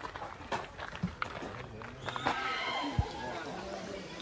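Indistinct voices of people talking and laughing as they walk, with scattered footsteps on a sandy path.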